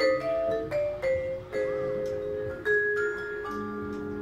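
Vibraphone played with mallets: struck notes and chords that ring on and overlap, with fresh strikes about every half second to a second.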